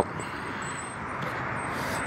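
Steady road traffic noise from cars passing on a busy road, an even rushing hiss that grows a little brighter near the end.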